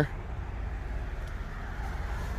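Quiet background between words: a low steady rumble under a faint hiss, with no distinct event.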